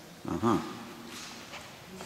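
A person's short, wordless voiced "mm" close to the microphone, about a quarter of a second in, its pitch bending briefly.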